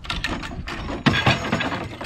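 Homemade wooden catapult firing: a rapid clatter of wood and metal as the release bar is pulled and the arm swings, with a loud bang about a second in. The release is forceful enough to bend the steel release bar.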